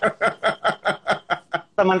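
A man laughing: a quick, regular run of short 'ha' bursts, about five a second, running into speech near the end.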